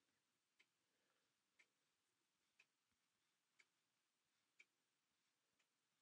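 Near silence: room tone with a faint, regular tick about once a second.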